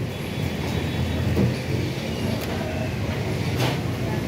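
Steady low mechanical rumble of background noise, with a brief faint click near the end.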